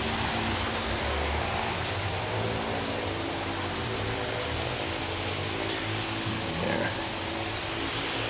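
Steady, even background hiss with a low hum underneath.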